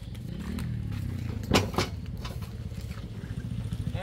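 Generator set's engine running, picking up speed about half a second in and then running steadily with a fast, even pulse. Two sharp knocks sound about a second and a half in.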